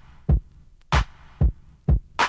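Bare drum beat from a DJ's mix: deep kick drums and sharp snare hits alternating, about two hits a second.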